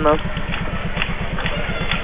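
A steady low buzz pulsing about a dozen times a second, typical of electrical hum on an old TV tape recording, with a faint background hiss.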